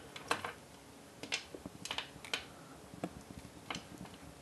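A handful of light, irregular plastic clicks and taps as small red plastic charge-lead connectors are handled and pushed together, plugging LiPo battery main leads into a parallel charge cable.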